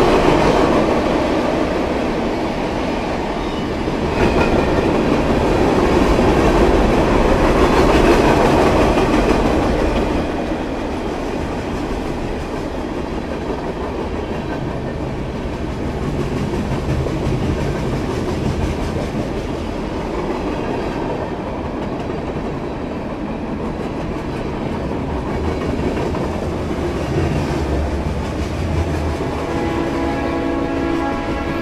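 Norfolk Southern freight train cars rolling past close by, a steady rumble of steel wheels on rail with clickety-clack over the joints, loudest in the first ten seconds.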